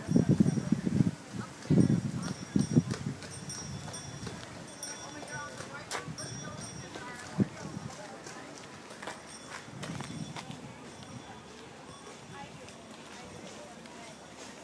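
Voices talking briefly at the start, then the irregular clip-clop of a horse's hooves on pavement as a horse-drawn carriage goes by.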